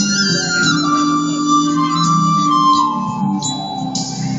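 Vietnamese bamboo transverse flute (sáo trúc) playing a slow, sustained melody over a lower accompaniment. The flute line steps down in pitch across the phrase.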